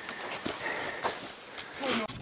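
Hikers' shoes scuffing and knocking on granite boulders as they scramble up a rocky slope: a few scattered sharp steps over a light rustle, with a short voice just at the end.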